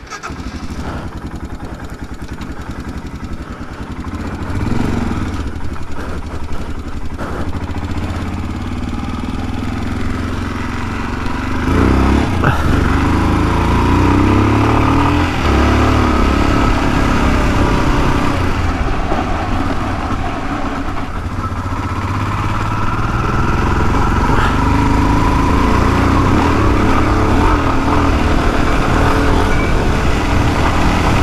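Royal Enfield Himalayan 411's single-cylinder engine coming in suddenly, then running as the motorcycle rides off, the engine note climbing under throttle about four seconds in and again about twelve seconds in before holding steady.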